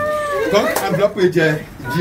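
Several people's voices talking and calling out over one another, opening with a short high call that rises and falls.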